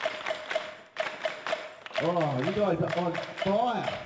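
A group doing body percussion: quick, rhythmic claps, slaps and stomps go through the whole stretch. A voice calls out over them in the second half.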